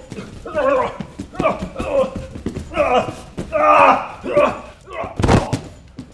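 A man's voice making mostly wordless vocal sounds, then one heavy thud about five seconds in as a body drops onto the padded mat.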